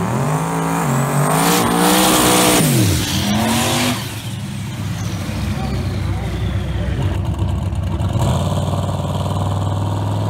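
Drag cars doing burnouts: engines revving hard in rising and falling sweeps while the rear tyres spin with a loud hiss, for about four seconds. After that the engines run on at a lower, steadier pitch.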